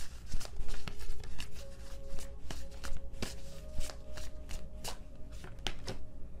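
A deck of tarot cards being shuffled by hand, a run of irregular quick clicks and slaps through the deck.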